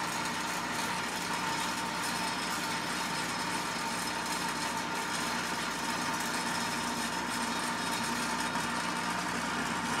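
Small electric motor of a toy-train conveyor accessory running steadily, with a constant hum, as it carries barrels up its yellow inclined belt.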